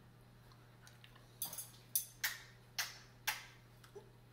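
A person chewing a mouthful of roast lamb, heard as a run of about six short mouth-smacking clicks over the second half, roughly two a second.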